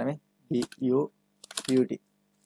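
Typing on a computer keyboard: a few short key clicks as a word is keyed in, with a man's voice speaking briefly alongside.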